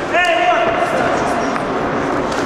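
A loud shouted call from someone by the ring, dipping in pitch and then held for about a second, echoing in a large hall, with a few dull thuds of gloved punches during the exchange.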